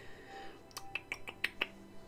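A quick series of about six sharp clicks over about a second, from tarot cards being handled, over soft background music.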